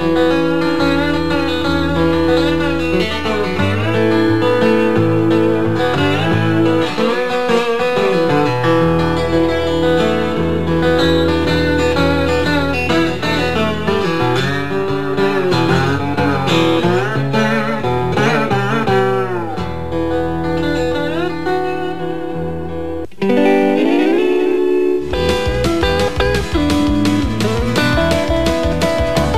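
Acoustic lap slide guitar played with a slide bar: notes glide up and down over sustained low bass notes. About 23 s in it breaks off, and a different piece of music with an even pulse takes over.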